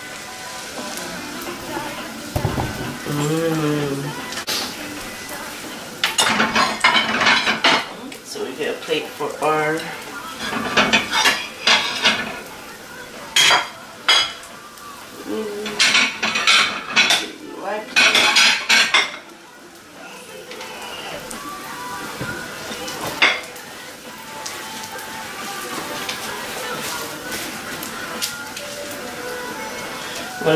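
Pancake batter sizzling in oiled non-stick frying pans, with several bursts of clinking and clattering from pans and kitchen utensils.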